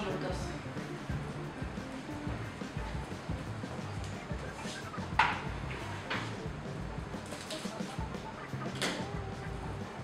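Soft background music, with a few short crinkles of plastic cling film as it is pressed and wrapped tightly around a meat roll, about five, six and nine seconds in.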